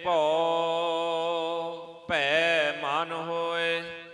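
Gurbani kirtan: a singer holds long drawn-out notes with wavering, bending pitch over a steadier sustained accompaniment, likely harmonium. There are two phrases, with a brief dip between them about two seconds in.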